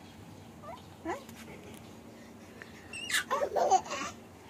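A baby babbling: two short rising sounds about a second in, then a louder burst of babbling with a sharp high rise near the end.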